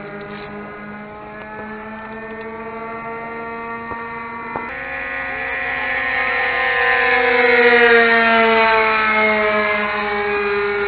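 A radio-controlled model fighter plane's motor running at speed in flight. About halfway through it makes a pass: it grows louder to a peak, then fades as its pitch drops on the way by.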